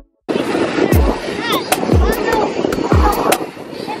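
Plastic wheels of a 24-volt Audi Q5 ride-on toy car rumbling steadily as it rolls over asphalt. Electronic background music with a deep kick drum about every 0.7 s plays over it. The rumble cuts in suddenly just after the start.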